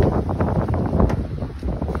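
Wind buffeting the microphone, with several thumps and knocks of footsteps on a boat's deck; the loudest thump comes right at the start.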